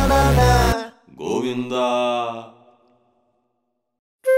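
A Telugu film song with a heavy beat cuts off abruptly less than a second in. After a short gap, a lone voice chants one drawn-out phrase that fades away before three seconds in.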